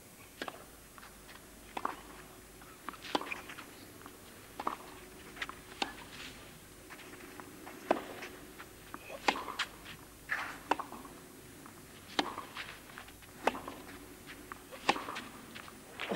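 Tennis rackets hitting the ball back and forth in a rally on a clay court: a string of sharp knocks, irregularly spaced about a second apart, over a quiet stadium background.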